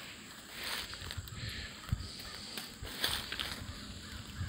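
Footsteps through grass and brush, with leaves rustling past and a few soft thumps as the person walks.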